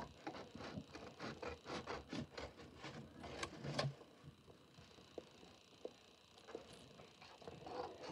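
A sheet of paper being handled and folded: a quick run of crisp rustles and crackles for about four seconds, then only a few scattered light taps.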